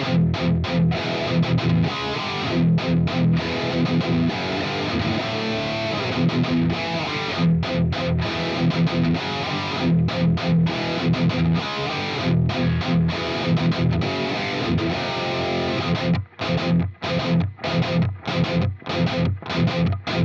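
High-gain electric guitar played through a Fractal Axe-FX II modelling a Mesa Boogie Mark IIC++ amp, its graphic EQ set in the Mark series' V curve with the 750 Hz mids cut hard, giving a chunky, scooped-mid tone. It plays a chugging low riff, which turns to choppy stop-start hits with short gaps in the last few seconds.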